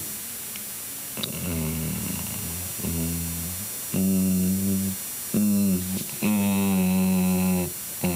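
A man humming a series of about five held nasal consonant sounds ('mm'-like hums), each lasting up to a second or so, the last one the longest and loudest. He is trying out how the nose sounds are made, feeling whether the air comes out through his nose.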